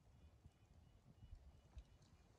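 Near silence: faint low knocks and a few soft clicks, with no clear source.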